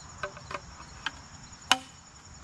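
Hollow plastic leaf-blower tube sections tapping and clicking against each other as they are fitted together: a few light clicks, then one sharp click near the end.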